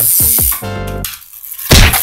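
A short burst of music with a steady tone in the first second, then a loud knock near the end as a toy die-cast van rams a stack of cardboard toy boxes and knocks them over.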